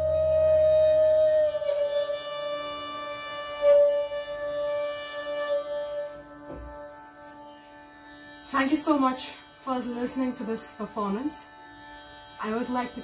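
The final bowed sarangi note and the last tabla stroke ring out together as the piece closes. The held string note fades away over about six seconds, and the deep drum resonance dies out within the first two or three seconds. A voice starts speaking about two-thirds of the way through.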